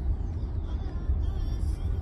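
Steady low rumble of tyres and road heard inside the cabin of a Tesla electric car driving through a tunnel, with no engine noise.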